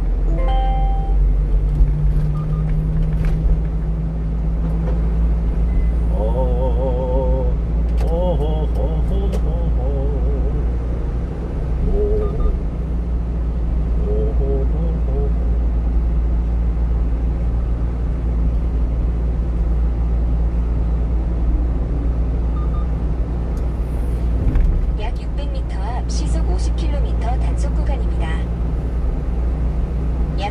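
Steady low engine and road rumble inside the cab of a 1-ton truck driving through city traffic at around 30 to 50 km/h.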